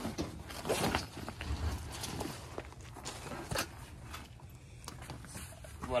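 Canvas and vinyl tent fabric of a pop-up tent trailer rustling as it is pulled and handled by hand, with a few soft knocks in between.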